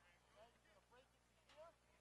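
Faint, distant voices of several people talking and calling out across an open field.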